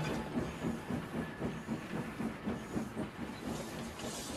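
Steam locomotive puffing: a rhythmic series of short hissing chuffs, about two to three a second.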